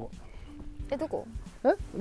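A few short wordless vocal exclamations with sliding pitch, from people reacting as they watch a golf ball in flight, over faint background music.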